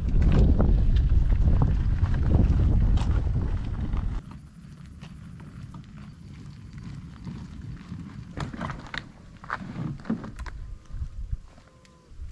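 Small tires of a homemade boat dolly rolling over gravel under a loaded jon boat, a loud low rumble with crunching, mixed with wind on the microphone. About four seconds in it cuts off to a much quieter outdoor ambience with a few scattered knocks and clicks.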